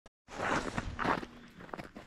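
Footsteps crunching in packed snow: two strong steps in the first second or so, then fainter crunches.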